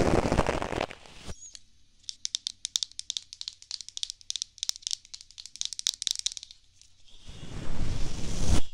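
Makeup brushes worked close against the microphone: a dense scratchy brushing noise that stops about a second in. Then comes a run of quick, light, irregular clicks and taps from handling the brushes, lasting about five seconds, before the scratchy brushing starts again near the end.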